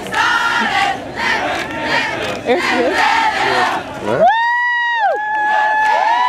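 Crowd of voices shouting and cheering as a running formation passes, then a nearby spectator lets out a loud, long, high-pitched cheer in the last two seconds that rises, holds, dips and holds again.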